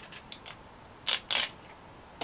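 Small paper craft pieces being handled on a tabletop: a few light clicks, then two short rustles about a second in.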